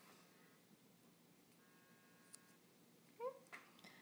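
Near silence: room tone, with a faint brief tone past the middle and a short faint rising sound near the end.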